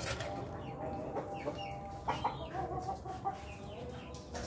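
Rooster clucking in short calls, with a louder pair about halfway through.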